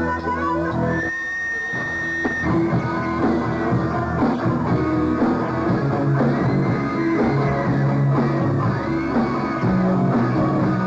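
Live rock band playing an instrumental intro. An electric guitar holds one high note for about a second and a half, then plays a phrase of notes that bend up and down over steady low notes, with drums faint in the mix.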